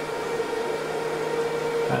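Cooling fans of an HPE ProLiant DL560 Gen10 rack server running steadily: an airy rush with a constant whine, while its four Xeon Gold CPUs are under full multi-core benchmark load.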